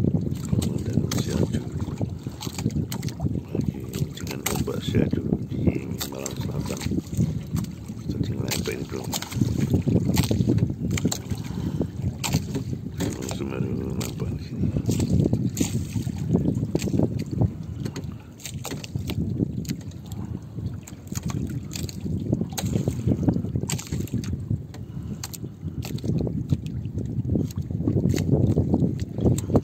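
Water slapping and splashing against the hull and outrigger float of a jukung outrigger canoe moving over choppy sea, with many short irregular slaps over a low rumble.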